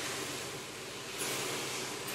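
Buckwheat groats, carrots and kale sizzling in an oiled pan while a silicone spatula stirs them through, with tamari sauce just added. It is a steady hiss that grows a little brighter after about a second.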